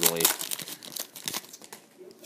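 Foil wrapper of a Panini Gridiron football card pack crinkling as it is torn open and the cards are pulled out: a rapid run of crackles that thins out about a second and a half in.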